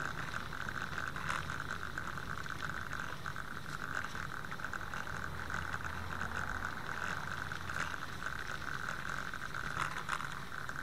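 Steady running noise of a bicycle on the move: a continuous whir with a fine, rapid rattle.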